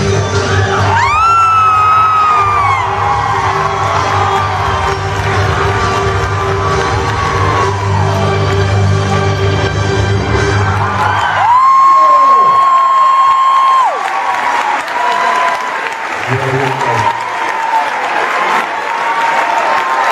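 Recorded dance music with a steady bass line plays for a stage dance, with a rising whoop from the audience early on. The music stops about halfway through, a long high whoop is held for about two seconds, and the audience cheers.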